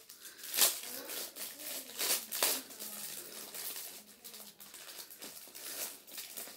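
Plastic packaging crinkling as it is opened by hand: a run of sharp crackles, loudest about half a second in and again around two seconds in.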